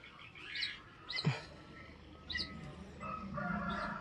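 A few brief, high bird chirps, spaced a second or so apart, over faint outdoor background.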